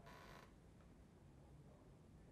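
Near silence: room tone, with a brief faint noise in the first half second.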